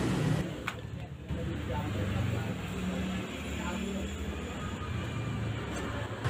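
Hands handling cardboard packaging, with a sharp click less than a second in, over a steady low background rumble and faint voices.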